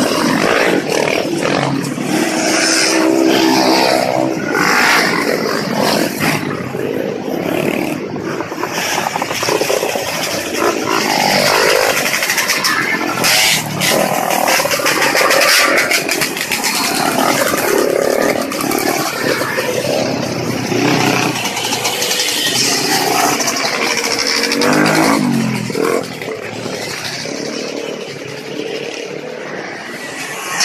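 Several small motorcycles' engines revving as the bikes ride past one after another, the pitch rising and falling with each pass.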